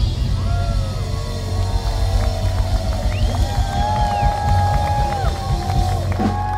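Live band music with a harmonica playing long held notes that bend in pitch, over bass guitar and drums.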